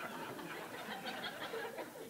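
Audience chuckling and murmuring, with scattered quiet laughter from several people.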